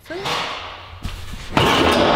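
A single knock about a second in, then loud, continuous clattering and scraping from about a second and a half in: ribbed sheet-metal wall panelling being pried and torn off a shop wall during demolition.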